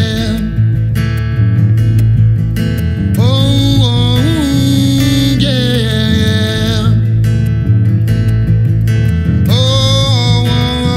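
Live acoustic rock: a strummed steel-string acoustic guitar over an electric bass line, with a man singing in phrases, one in the middle and another starting near the end.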